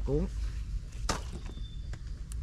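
A single sharp clack about a second in from a wire-mesh cage snake trap being handled over a plastic basket.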